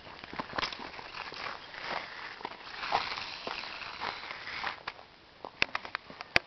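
Micro-T micro RC truck driving on gritty asphalt: a rasping hiss from its small motor and tyres that swells and fades, with scattered sharp clicks of grit and footsteps.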